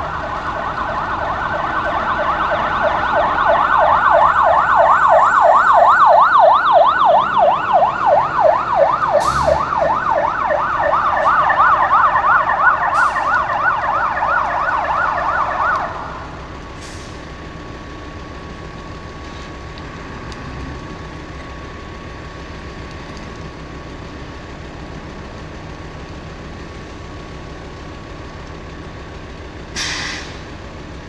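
Emergency vehicle siren on a fast, rapidly rising-and-falling yelp, growing louder over the first few seconds as it approaches and then cut off suddenly about halfway through. A steady low rumble and a faint steady tone remain after it stops.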